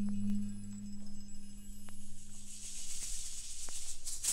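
Avant-garde orchestral music: a low held tone fades out over the first three seconds while a high, hissing texture swells toward the end, with a few sharp isolated clicks.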